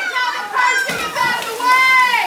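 A group of young teenagers shouting and calling out over one another in high-pitched voices, with no clear words.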